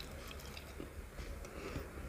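Close-miked chewing of a hand-fed mouthful of rice mixed with curry: quiet mouth sounds with a few faint soft clicks.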